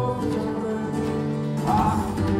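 Live Scottish folk band playing an instrumental passage: fiddle over strummed acoustic guitar, held notes with no voice.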